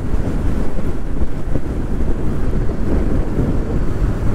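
Wind rushing over the microphone of a motorcycle rider at highway speed: a steady, loud low rumble with no clear engine note.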